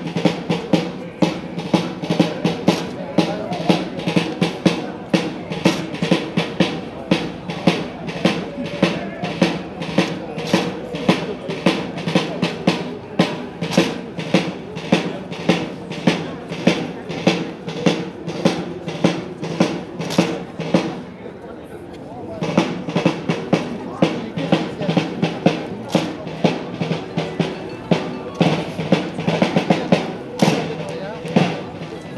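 Military drum cadence of snare and bass drum with accompanying music, a steady beat of about two hits a second keeping time for a marching rifle drill. The drumming drops out for about a second and a half about two-thirds of the way through, then resumes.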